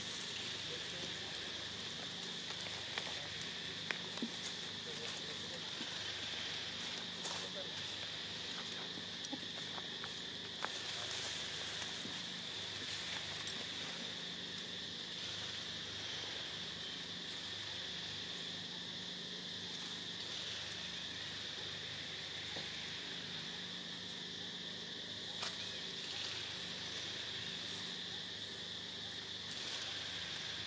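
Steady insect chorus: a continuous high-pitched buzz with no break, with a few faint clicks and rustles scattered through it.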